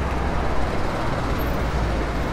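Truck engine running steadily as a fuel tanker truck drives along, a low, even engine sound with no music.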